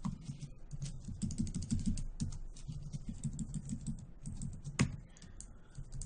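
Quick keystrokes on a computer keyboard, with one sharper, louder key strike about five seconds in.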